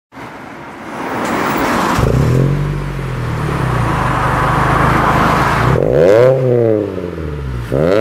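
A Mitsubishi Fortis running through an aftermarket dual-side, single-outlet rear exhaust section. The engine note builds up and holds steady, then near the end the throttle is blipped twice, each rev rising and falling quickly in pitch.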